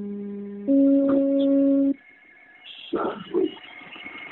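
A phone call recording, thin and cut off above 4 kHz as phone audio is, playing a tune of long held electronic notes that step in pitch about every second. The tune breaks off about two seconds in, leaving a faint high steady tone and a few short voice-like sounds.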